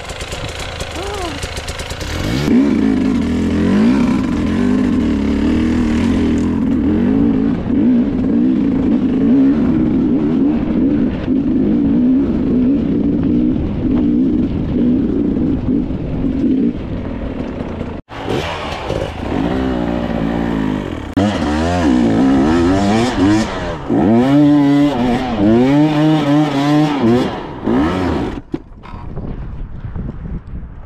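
Enduro dirt-bike engine running steadily under load while ridden. After an abrupt break about two-thirds in, it revs up and down in repeated bursts, then drops away near the end.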